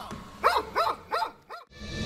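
A dog barking four times in quick succession, short sharp barks over about a second.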